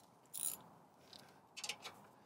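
Socket ratchet wrench clicking in two short bursts, about half a second in and again near the end, as a bolt is tightened into a tapped hole.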